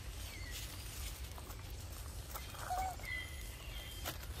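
Quiet outdoor forest ambience: a steady low rumble with a few faint, short chirps and one brief, slightly lower call a little before three seconds in.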